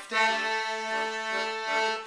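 Piano accordion holding one steady chord, coming in just after the start and sustained without change.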